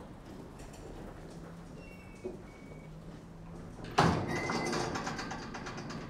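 A door bangs shut about four seconds in, the loudest sound here, followed by a rattling tail that dies away over a couple of seconds; before it, only a faint room hush with a few light taps.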